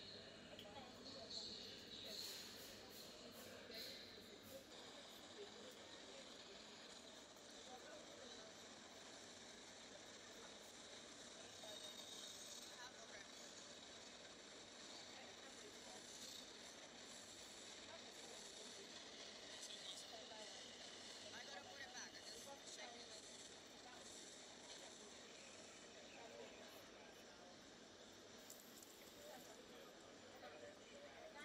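Faint, indistinct voices under a steady hiss, with a few small clicks.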